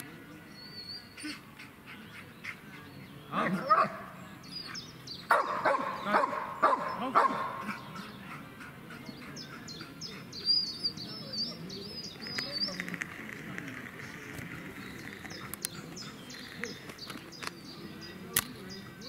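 A Malinois-type dog barking: a couple of barks about three seconds in, then a quicker run of about five barks around six seconds. Birds chirp faintly throughout.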